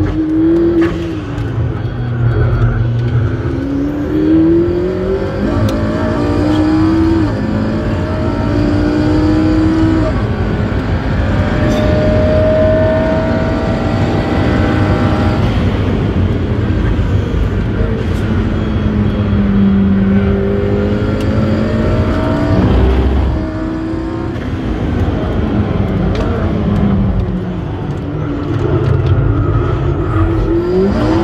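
McLaren P1's twin-turbocharged V8 heard from inside the cabin at speed on track, revving up and falling back again and again as the car accelerates and brakes, the engine note climbing in pitch several times. There is a brief dip in loudness about 23 seconds in.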